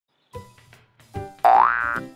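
Short intro music: two brief notes, then a loud boing sound effect rising in pitch about a second and a half in.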